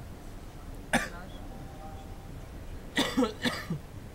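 Short bursts of a person's voice: one about a second in, then a cluster of three close together about three seconds in, the last ones falling in pitch.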